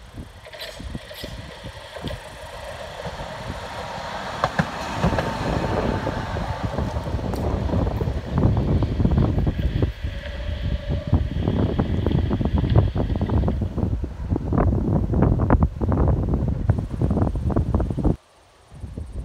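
Tram approaching and passing close by: a rising hum with a steady motor whine. From about eight seconds in comes a loud rumble, with the wheels clattering sharply and quickly over the rail joints.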